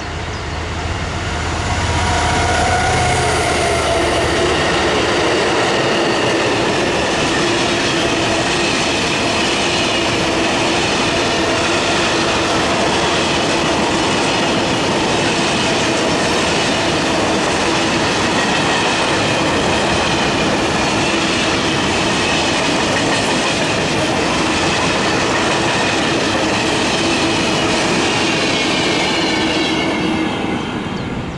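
Diesel locomotive passing at the head of a long train of empty flat wagons, its engine hum heard in the first few seconds. Then the wagons' wheels roll by on the rails in a loud, even rush with steady ringing tones, until the last wagon goes past near the end.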